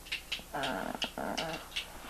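An animal's vocal sounds: short calls in quick succession, with sharp higher-pitched bits between them.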